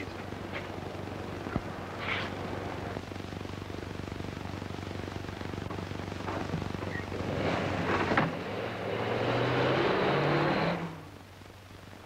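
Car engine starting and revving up, its pitch rising as the car pulls away, then cut off abruptly near the end. Earlier there are a few faint knocks over the steady hiss and hum of an old film soundtrack.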